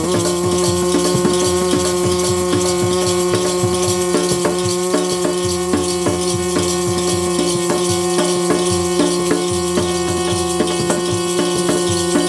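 Instrumental kirtan passage: a harmonium holds one steady note under a dholak beat, with a shaken rattle instrument keeping time at about two to three strokes a second.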